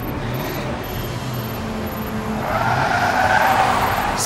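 Car sound effect: an engine running with a tire screech that swells over the last second and a half and is the loudest part.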